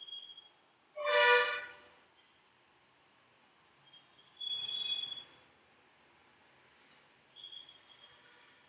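Metal ladle stirring meat and masala in a metal pot, scraping with brief high squeaks, and a longer scrape around the middle. About a second in, a short, loud horn toot is the loudest sound.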